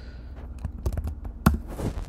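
A few separate keystrokes on a computer keyboard, the sharpest about one and a half seconds in, over a low steady hum.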